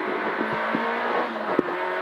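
Peugeot 106 N2 rally car's engine heard from inside the cabin, running hard at a fairly steady pitch. There are a few clicks and knocks from the car, with a sharp one about one and a half seconds in.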